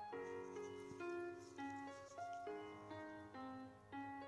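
Soft instrumental background music: sustained keyboard notes that change every half second or so.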